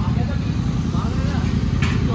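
A car engine idling, a low steady rumble, with faint voices in the background and a short click near the end.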